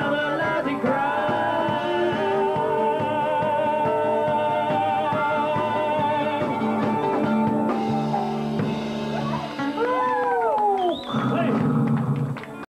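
Live acoustic folk band with mandolin and guitar playing the closing bars of a song, with long held notes wavering in pitch. Near the end the music gives way to falling whoops and cheering.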